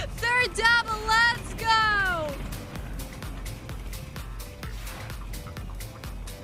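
A high voice calling out in a few drawn-out, sung-like notes, the last one sliding down in pitch, over game-show background music with a steady beat. The music carries on alone for the rest.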